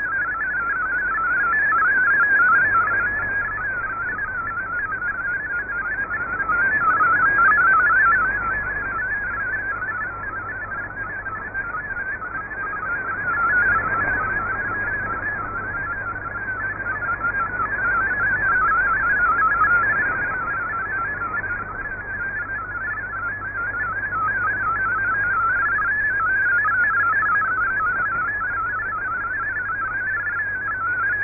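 MFSK32 digital-mode data signal received over shortwave radio: a fast, warbling stream of tones hopping within a narrow pitch band over steady radio hiss, swelling and dipping in strength every few seconds. It is a good signal, carrying text that decodes cleanly.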